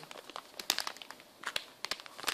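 Plastic anti-static bag crinkling as it is handled, in a string of short crackles, with a few sharper ones in the second half.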